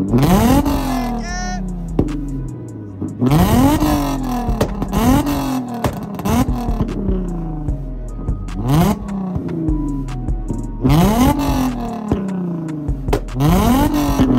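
Infiniti G-series coupe's V6 engine revved hard in repeated quick blips, about nine times, each rising sharply in pitch and falling back. The bigger revs end in loud exhaust cracks and pops, with flames at the tailpipe.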